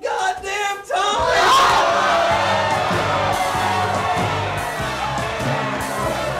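A crowd of people shouting and yelling in uproar, with music starting about a second in underneath, a bass line stepping through notes.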